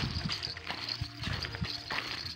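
Footsteps of people in slippers and sandals walking on dry, tilled soil: a string of soft, uneven steps, a few each second.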